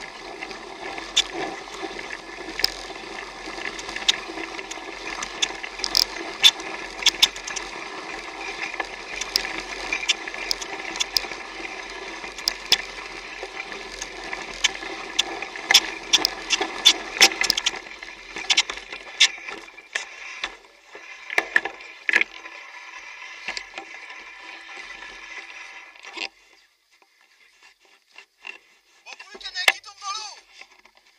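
Mountain bike ridden over a rough, wet track, heard from a camera mounted on the bike: a steady rolling noise with frequent sharp rattles and knocks as it goes over bumps. The steady noise drops away near the end, leaving a few scattered knocks.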